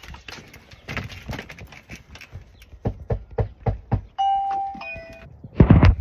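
Knocking on a house's front door, a run of sharp raps, then about four seconds in a doorbell chimes twice, a higher note followed by a lower one: a ding-dong.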